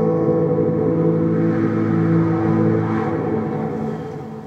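A held synthesizer chord played on a ROLI Seaboard Rise 49, the song's final chord ringing on steadily, then slowly fading near the end.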